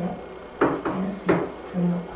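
A marker striking and scraping on a writing board in three short, sharp knocks as a short figure is written, with brief low voice sounds in between.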